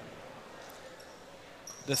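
Basketball dribbled on the hardwood gym floor at the free-throw line before the shot, faint under the gym's room noise.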